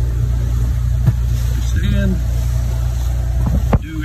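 Motor cruiser's inboard engines running steadily while underway, a constant low drone, with a brief dip just before the end.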